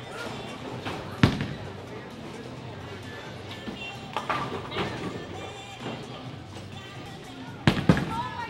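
Bowling alley din: sharp knocks of bowling balls and pins, one loud about a second in and two close together near the end, over background music and voices.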